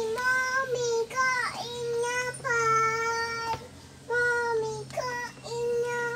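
A young child singing: high held notes in short phrases with brief gaps between them.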